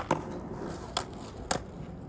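Skateboard clacking on concrete: a sharp hit as the board comes down at the start of a flip trick's landing, then two more single clacks about one and one and a half seconds in.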